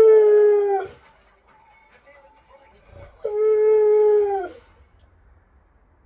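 A husky-type dog howling twice, two level, roughly one-second howls a few seconds apart, each dropping in pitch as it ends. Faint TV music and sound underneath.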